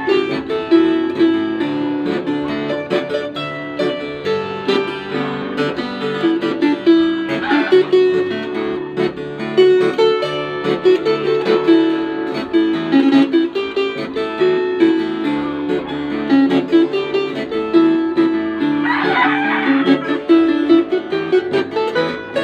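Wooden floor harp played fingerstyle: a continuous run of plucked melody notes over a steady line of low bass notes.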